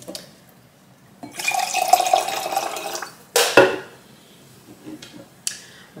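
Liquid poured into a glass for about a second and a half, with a steady ringing tone as it fills, followed by one sharp knock, like a glass or bottle set down on the table, and a few faint clicks.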